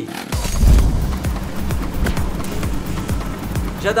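Portable gasoline generator pull-started and catching about a third of a second in, then running with a steady rapid knocking, under background music.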